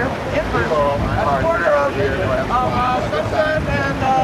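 A man's voice talking, too unclear to make out words, over a steady low background rumble.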